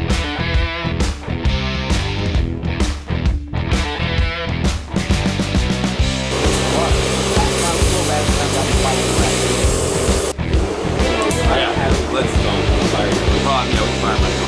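Rock music with guitar and a steady, heavy beat; about six seconds in, the sound grows denser with voices mixed in under the music.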